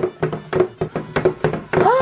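Baby Alive Go Bye Bye crawling doll crawling on a tabletop: its motor-driven limbs knock the table in a steady run of clicks, about four or five a second, over a low motor hum. A short voice sounds near the end.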